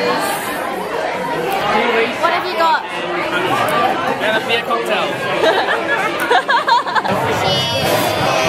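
Many people talking at once in a busy bar, a steady hubbub of overlapping voices with music playing underneath.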